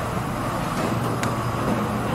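Steady hum of a semi-automatic PET bottle blow-moulding machine running its preform heating oven, with one sharp click a little over a second in.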